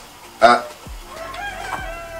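A rooster crowing in the background: one drawn-out call starting about a second in, after a short loud burst about half a second in. A few faint knocks come from handling a chainsaw on a wooden table.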